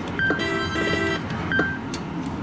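Electronic beeps and a short synthesized jingle from a Sigma Joker Panic! video poker machine during its High-or-Low double-up card reveal: a brief beep, a chord-like jingle lasting about a second, then another brief beep about a second and a half in, over steady arcade background noise.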